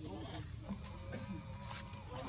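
Infant macaque crying with thin, wavering bleat-like calls, a baby monkey wanting milk.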